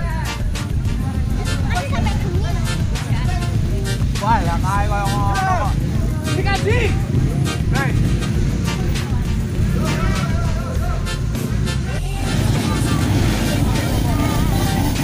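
Dirt-bike engines running in a steady low drone under a chattering crowd of spectators, with a loud call about four seconds in.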